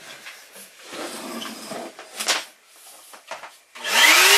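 Faint rustling and knocks as a vacuum cleaner is handled, with one sharper knock about two seconds in. Near the end the vacuum cleaner switches on, its motor whine rising as it spins up.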